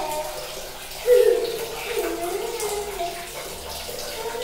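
Water splashing in a small tiled bathroom as a plastic mug of water is poured over a child during a bucket bath.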